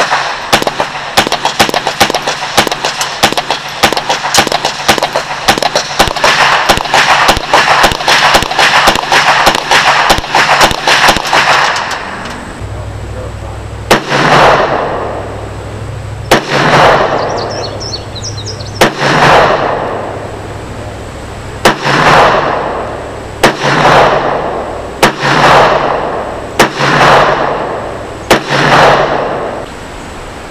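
.22 LR rifle shots from an AR-15 with a .22 conversion, fired rapidly at several shots a second for about twelve seconds. After a short pause come single shots from a Kel-Tec PMR-30 pistol in .22 WMR, one every second or two, each with an echoing tail.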